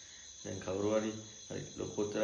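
A man's voice speaking in short phrases, starting about half a second in after a brief pause, over a faint steady high-pitched tone.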